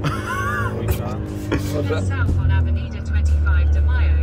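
SEAT car's engine running steadily, heard inside the cabin while driving on a clutch that has burnt out, with voices shouting over it near the start.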